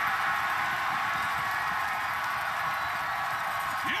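Hockey arena crowd cheering after a fight, a steady roar with no breaks.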